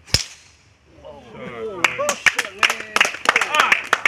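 A single sharp crack of a golf club striking the ball off the tee. About a second later, several spectators' voices rise together, and sharp hand claps follow.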